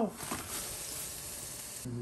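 Raw sausages going into a pot of boiling liquid, which bubbles and hisses steadily. The sound cuts off suddenly just before the end.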